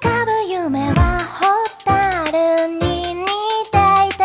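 Upbeat electronic pop background music with a high-pitched sung vocal melody over bass and drums.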